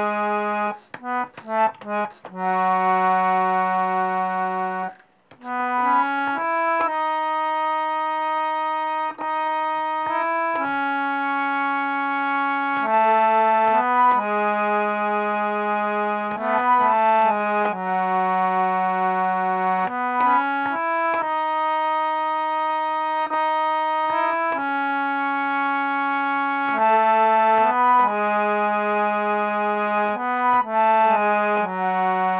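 Harmonium played by hand: a slow melody in Raga Kafi, with reedy notes held for a second or more, often two keys sounding together. It opens with a few quick short notes and breaks off briefly about five seconds in.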